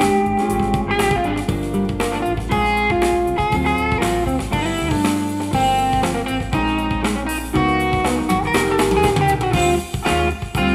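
Instrumental electric guitar music with drums, played back over large floor-standing loudspeakers driven by a small ECL82 vacuum-tube amplifier.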